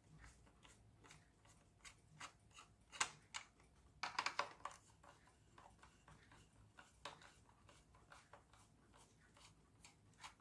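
Faint clicks and light scraping of a screwdriver and fingers working inside a hollow plastic toy car shell, with a short cluster of clicks about four seconds in and a single click near seven seconds.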